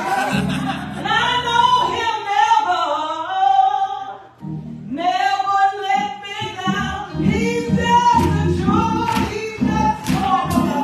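A woman singing a gospel song solo into a microphone over a low instrumental accompaniment. Her voice breaks off briefly about four seconds in, and a steady beat joins in the second half.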